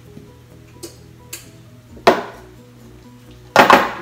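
Kitchen utensils and dishes knocking together while baking: one sharp clank about halfway through and two quick ones near the end, with a few faint ticks before, over soft background music.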